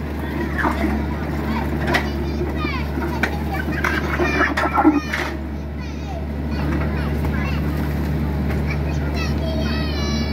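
Mini excavator's diesel engine running steadily while its bucket pries up and breaks slabs of concrete road surface, with scraping and knocks of concrete chunks about two seconds in and a louder cluster around four to five seconds in. Children's voices chatter over the machine.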